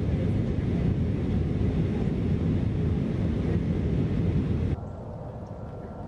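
Steady, deep cabin rumble of a jet airliner in flight, heard from inside the cabin at a window seat. Near the end it cuts off abruptly to a much quieter outdoor background.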